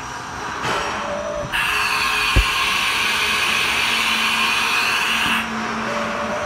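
Haas VF2 umbrella tool changer running a tool change cycle: a loud hiss of compressed air lasting about four seconds, with one sharp clunk partway through and a steady low hum. This cycle completes without the tool changer out-of-position fault.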